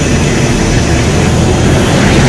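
Loud, steady roar of a jet engine at high power.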